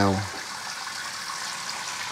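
Kitchen tap running into a stainless-steel sink while a chayote is rinsed under the stream, a steady even hiss of water.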